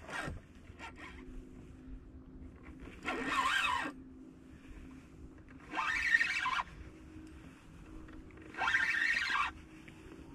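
Fishing reel winding in line in three short bursts about three seconds apart, each a zipper-like whirr lasting under a second, as a hooked fish is pumped and wound in on a slow jig rod.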